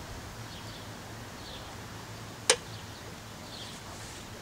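A single sharp click about two and a half seconds in, from the spark plug lead being fitted onto the plug of a Maytag 92 single-cylinder engine, over a quiet outdoor background with a few faint bird chirps.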